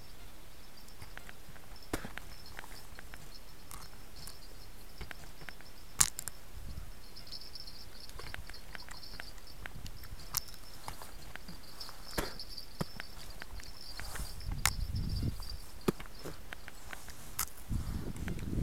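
Quiet open-air background with a faint, broken high chirping and a few small sharp clicks, the sharpest about six seconds in. A low rumble starts near the end.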